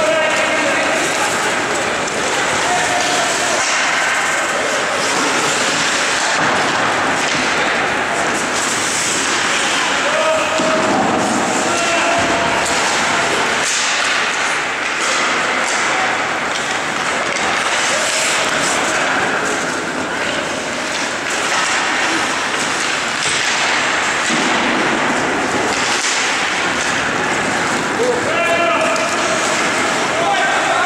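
Ice hockey play in an indoor rink: skates scraping the ice and sticks, puck and boards clacking and knocking in quick irregular hits, with voices of players and spectators calling out at times.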